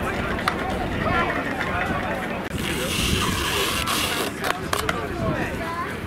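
Indistinct voices of people chatting outdoors, with no clear words. A loud hiss cuts in about halfway and lasts roughly a second and a half.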